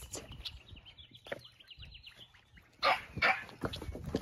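A dog barking, two short barks close together about three seconds in, with faint high chirping before them.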